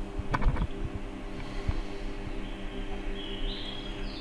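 Steady low electrical hum from the camera's faulty microphone, with a few sharp clicks in the first second and another a little later.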